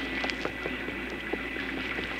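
Rain sound effect in an old radio drama: a steady hiss with a few faint, scattered clicks.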